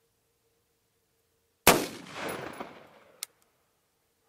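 A single .223 Remington rifle shot from a 20-inch-barrel AR-15, about one and a half seconds in, with its report echoing for about a second and a half. A short sharp click follows near the end.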